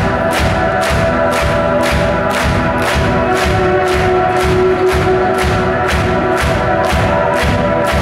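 A rock band playing live and loud, heard from the audience. A steady beat of drum and cymbal hits, about three a second, runs over held chords.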